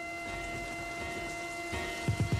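Rain-like crackling hiss under a few steady held synthesizer tones, as the opening of a recorded hip-hop track; low drum thumps come in near the end.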